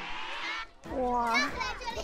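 Background music with held notes, cut off suddenly under a second in, then a high voice calling out with a long, gliding 'wa' among crowd noise.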